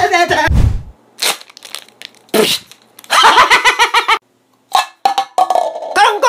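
A man's rhythmic chanting breaks off with a single heavy, low thud of a person landing a jump on foam floor mats. Short loud vocal outbursts follow.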